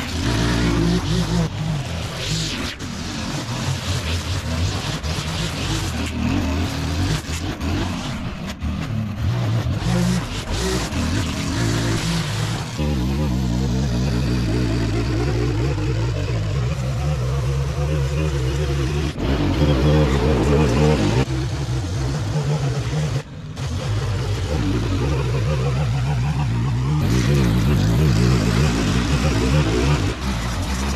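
Gas string trimmer running at working speed, cutting grass and edging the turf along a concrete walkway. The engine's steady note changes abruptly a few times, with a brief dip a little over 23 seconds in.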